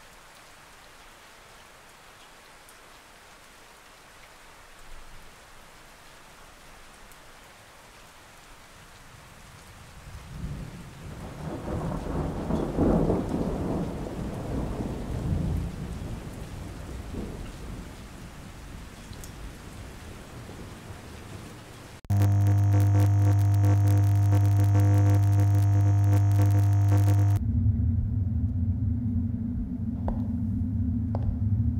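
Soft rain, then a thunder rumble that swells from about ten seconds in and slowly dies away. About two-thirds of the way through, a loud, steady low droning hum cuts in suddenly, and it shifts to a lower drone a few seconds before the end.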